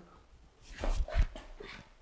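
Sandalled feet stepping and scuffing on a hard polished floor as a pushing partner is thrown off balance. There are a few soft footfalls about a second in, with a short squeak among them.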